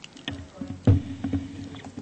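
Handling noise from a desk microphone and papers being moved on a table: several knocks and rustles, with one loud thump about a second in.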